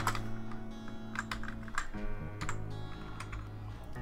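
Computer keyboard typing in scattered, irregular keystrokes over background music with held low notes.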